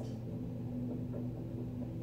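A steady low hum with no changes or strikes, faint under the room's quiet.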